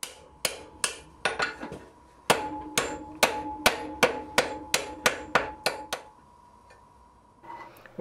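Blacksmith's hand hammer striking red-hot iron on the anvil, forging a 90-degree bend at the offset of a bolt-tong blank: a few spaced blows, a short pause, then a steady run of about two to three blows a second with the iron ringing between them. The hammering stops about six seconds in.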